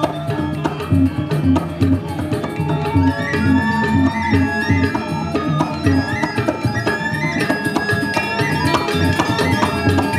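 Balinese gamelan playing dance accompaniment: bronze metallophones ring out a busy melody over a steady, repeating pattern of drums and low gong-like tones.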